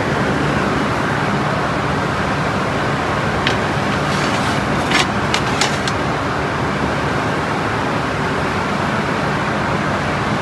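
Steady background noise with a low mechanical hum, and a few short sharp clicks about halfway through.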